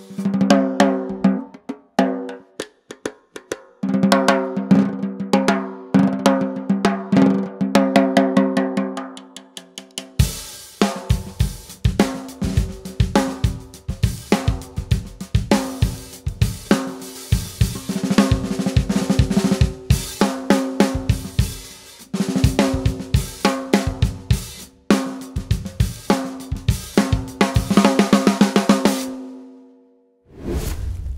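Rogers Dyna-Sonic 14x5 maple-poplar-maple wood snare drum played with sticks with the snare wires switched off, so each stroke rings with a clear drum-head tone and no wire sizzle. About ten seconds in, a full drum-kit groove joins with bass drum, hi-hat and cymbals, and the playing stops at the end.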